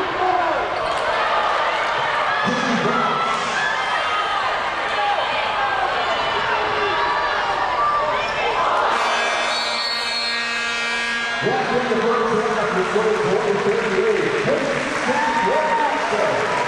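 Basketball game sounds in an arena: a ball bouncing on the court amid crowd voices. About nine seconds in, a low buzzing arena horn sounds for about two and a half seconds, signalling the end of the half.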